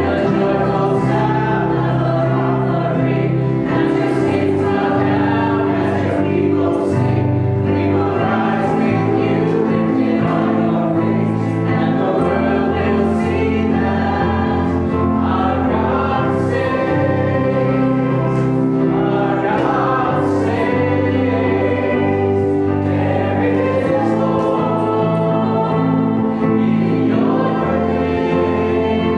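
A congregation and small worship band singing a hymn, voices over keyboard and guitar accompaniment, in steady sustained phrases.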